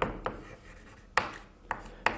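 Chalk writing on a blackboard: a few sharp taps and short scratchy strokes as the chalk meets the board.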